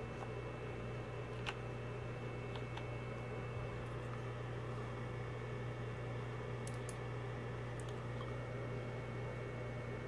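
Steady low hum of room background, with a few faint, widely spaced clicks from computer keyboard keys and a mouse button as a word is typed and a menu is opened.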